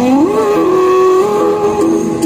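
Recorded Hindi patriotic film song playing: a held melody line that slides up in pitch just after the start, then holds steady over the accompaniment.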